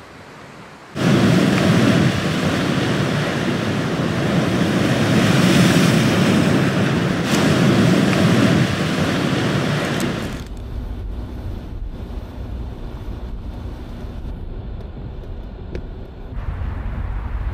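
Sea waves breaking, with wind on the microphone: a loud, steady rushing that starts suddenly about a second in. About ten seconds in it gives way to a quieter, low rumble of a car driving on a wet road, heard from inside the cabin.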